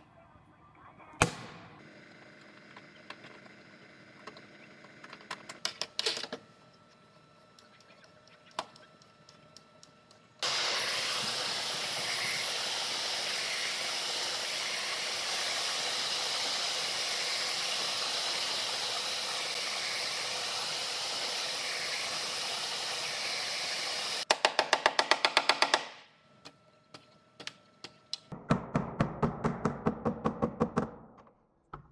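Aluminum pin-welding gun firing pins onto an aluminum quarter panel, a few sharp snaps in the first seconds. Then a heat gun blows steadily for about fourteen seconds. It is followed by a fast, even run of about a dozen clicks and, near the end, light hammer taps on the panel.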